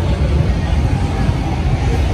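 Busy downtown street at night: a steady low rumble of traffic with people's voices mixed in.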